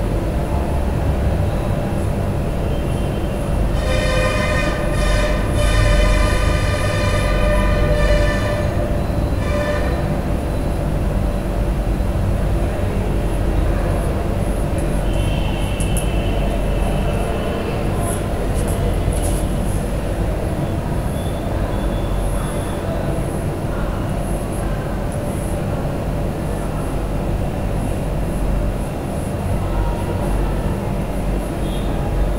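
A steady low rumble, with a loud horn-like pitched tone held from about four to ten seconds in.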